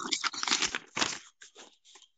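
Irregular bursts of rustling, crackling noise over a conference-call line for about the first second, then fading to faint scraps.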